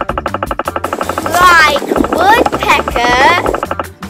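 Woodpecker drumming, a fast even run of taps lasting about a second, followed by loud wavering calls that rise and fall in pitch, over background music.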